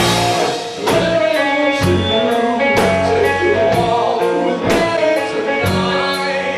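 Live rock band playing a song: electric guitar, keyboard and drum kit, with sharp drum and cymbal strokes about twice a second.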